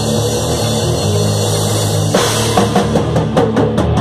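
A thrash metal band playing live in rehearsal: distorted electric guitar and bass hold heavy low notes. About halfway through, the drum kit comes in with rapid hits.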